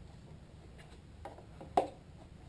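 A hard plastic bin being handled, with faint scuffs and one sharp, slightly ringing knock near the end.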